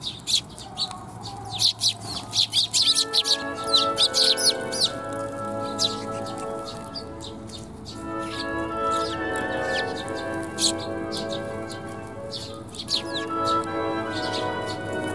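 Eurasian tree sparrows chirping in quick, short, sharp calls, thickest in the first few seconds and again near the end. From about three seconds in, background music of steady held notes plays under the chirps.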